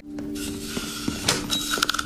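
Cartoon soundtrack: a soft held chord of background music, with a few light clicks in the second half.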